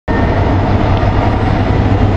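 Diesel freight locomotives passing: a loud, steady engine rumble with a low drone.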